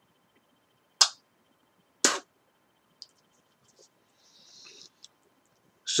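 Two sharp clicks about a second apart, then a brief soft hiss of spitting out tobacco juice from a fresh dip of moist snuff.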